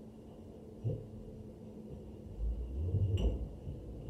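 Low thudding footsteps of someone running across the floor, starting a little past halfway and growing louder, with a single thump about a second in and a sharp click near the end.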